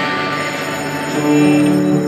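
Live band's electric guitars ringing out sustained, bell-like notes, with the held notes changing to new, louder ones just past a second in.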